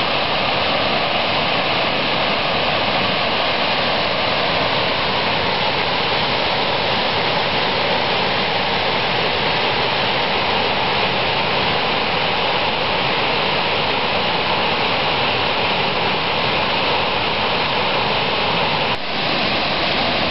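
Small waterfalls cascading over boulders in a rocky brook: water rushing at a steady, even level throughout, with a brief click and dip near the end.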